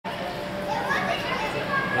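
Indistinct background voices and chatter in a large indoor hall.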